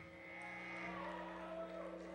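Low, steady electrical hum from the stage sound system, with a thin high tone that stops about a second in.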